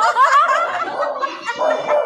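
Several women laughing and chuckling together, the laughs overlapping.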